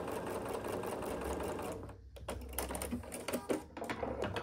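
Bernina B 770 sewing machine stitching a seam in a rapid, even run, then stopping about halfway through, followed by a few scattered clicks.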